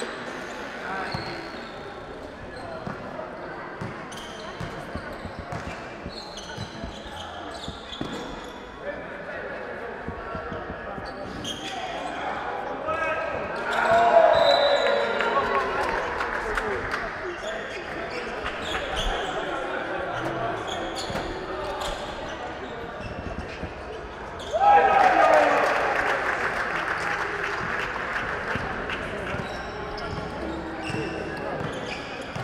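A basketball bouncing on an indoor court, with players' and spectators' voices echoing in a large gym. Twice a loud group shout goes up suddenly and dies away over a few seconds.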